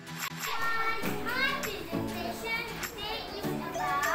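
Children's voices cheering, with repeated rising calls about every second, over background music.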